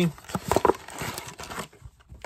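Cardboard blind box being torn open and handled: a run of short paper rustles and light knocks, loudest about half a second in and dying down near the end.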